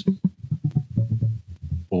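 Electric bass guitar playing a quick run of short, clipped low notes, about five a second, in a G pentatonic line.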